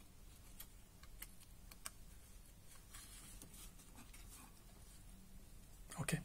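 Near silence with a few faint clicks and taps as a plug on a red-and-black power lead is fitted onto a socket on a small copper-clad circuit board; the sharpest click comes about two seconds in.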